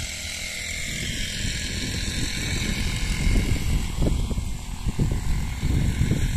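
Wind buffeting the microphone in gusts, a rough low rumble that grows stronger in the second half, over a steady high hiss of open-field background.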